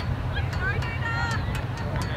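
Distant high-pitched shouted calls from players and spectators at a women's rugby league game, one call held for about half a second, over a steady low rumble.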